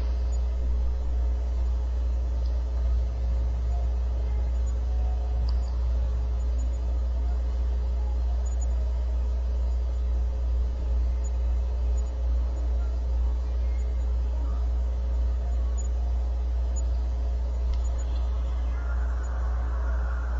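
Steady low hum and rumble, with faint hiss above it. It stays even throughout.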